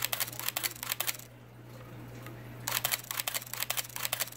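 Nikon D60 DSLR with its back cover off, its mirror and shutter firing in two rapid bursts of clicks, the first ending about a second in and the second starting near three seconds. The shutter runs through the bursts without sticking after its drive gear was cleaned with DeoxIT D5.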